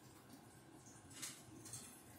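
Near silence, with two faint, brief scratches a little over a second in and near the end: a cat's claws gripping the wooden top rail of a rocking chair as she balances.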